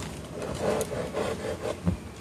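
Hand saw cutting through a tree branch in a quick run of short rasping strokes.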